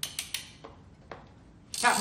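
Plastic crank mechanism of a hand-turned balloon-pop game toy clicking as it is turned: about five sharp, uneven clicks in the first second or so. A voice comes in near the end.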